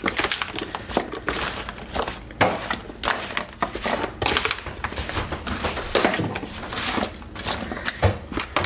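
A metal spoon stirring and tossing diced raw potatoes in a disposable aluminium foil pan: irregular scrapes and clinks as the pieces tumble.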